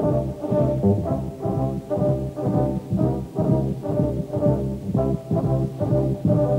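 Live jazz: a brass ensemble of trumpets, trombones, horns and tubas playing full chords over a deep bass line, pulsing about twice a second.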